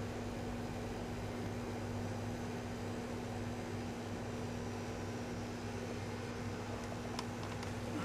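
A steady low electrical hum over an even hiss, with one faint click about seven seconds in.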